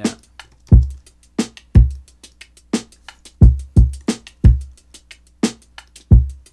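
Hip-hop drum loop of kick, snare and hi-hats playing back in a steady pattern, run hard through a drum bus compressor, with one clip pitched up in Ableton's Beats warp mode.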